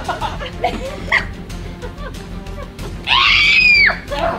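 Background music, then a loud high-pitched scream lasting about a second near the end, dropping in pitch as it breaks off: a person's reaction to having slime dumped over them.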